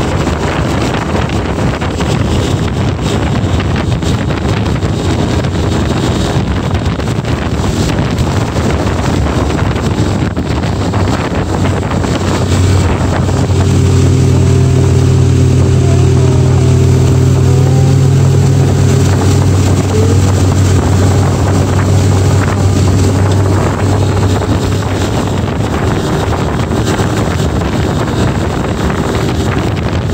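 A tow boat's engine running at speed, pulling a water-skier, under heavy wind rushing over the microphone. About halfway through, the engine's low hum comes through steadier and stronger for some ten seconds, then sinks back into the wind.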